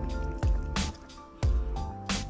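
Background music: held chords over a beat with strong low thumps, plus a wet squishing, dripping sound.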